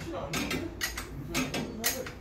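Small metal parts of a Yamaha XMAX300 scooter's rear disc brake caliper clicking and clinking as they are handled during a brake pad change: several short sharp clicks.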